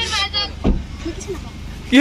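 A car engine running at idle, a steady low hum, with a child's high voice over it at the start and a single thump a little under a second in.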